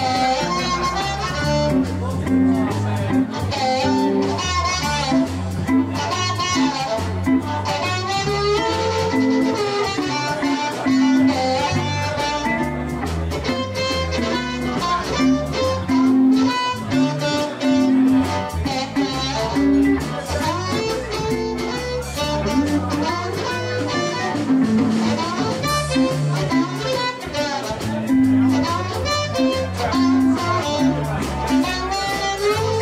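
Electric blues band playing an instrumental passage: a harmonica cupped against a vocal microphone, over electric guitar, electric bass and a drum kit.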